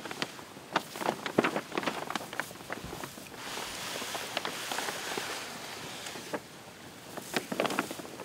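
Large sheet of folded paper crackling and rustling as a human-sized paper boat is shuffled over grass toward the water: a run of sharp crinkles, a softer sliding hiss in the middle, then more crinkles near the end.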